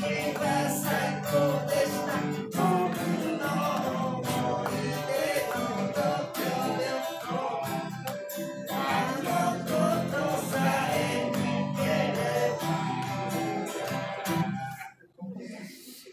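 Acoustic guitar played live, with a man's voice singing along. The music breaks off near the end.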